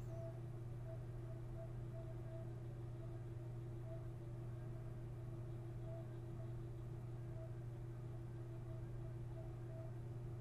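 Steady low electrical hum with a faint hiss: the background noise of a desktop recording setup, with nothing else happening.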